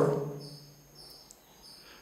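Faint, high-pitched chirps repeating about four times in a quiet lull, as a man's voice fades out at the start.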